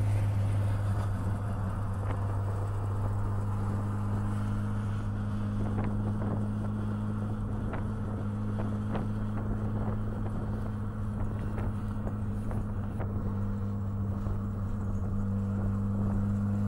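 A car engine, the Bonneville Jetta's modified 2.0-litre turbocharged four-cylinder, runs at a steady speed as the car rolls slowly forward. It makes a constant low hum with a few light clicks in the middle.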